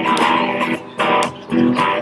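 Electric guitar playing strummed chords in a steady rhythm.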